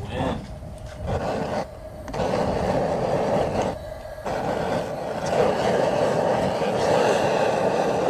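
LoCo propane outdoor cooker burner being lit with a burning paper towel and run at low gas: a steady rushing noise of gas and flame, with two short drops about two and four seconds in.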